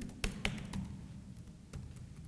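A few separate keystrokes on a computer keyboard, the loudest two about a quarter and half a second in, then sparser fainter taps.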